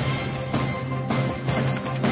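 News programme's closing theme music: a drum beat about twice a second over a held low bass note.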